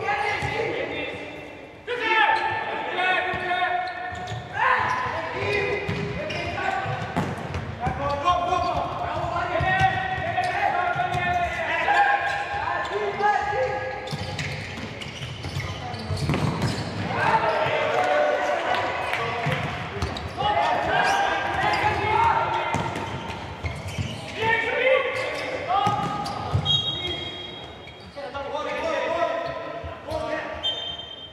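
Futsal ball being kicked and bouncing on a sports-hall floor, with repeated sharp knocks, under players' and coaches' shouts echoing in a large indoor hall.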